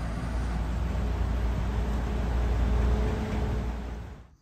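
City street traffic: a steady low rumble of passing cars that fades out sharply near the end.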